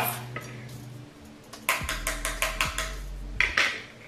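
Makeup brush tapped against the hard edge of an eyeshadow palette to knock off excess powder: a quick run of about eight sharp clicks, then one more near the end.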